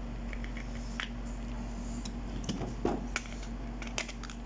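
Plastic modules of a toy robot being handled and fitted back together: a few light clicks, then a short cluster of small knocks and scrapes a little past halfway, over a steady low hum.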